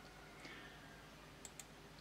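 Near silence with a faint room hum, broken by two quick faint clicks about one and a half seconds in: a computer mouse button being clicked.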